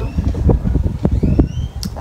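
Uneven low rumble of wind buffeting the phone's microphone, with a faint high rising chirp a little past halfway.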